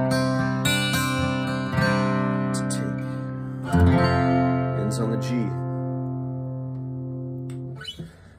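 Acoustic guitar tuned down a whole step, strumming a few chords. A final chord is struck about four seconds in and left ringing until the strings are muted near the end.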